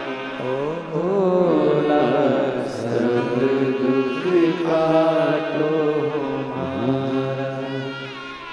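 A man singing a devotional Hindu chant into a microphone, drawing out long, gliding notes over a steady low drone.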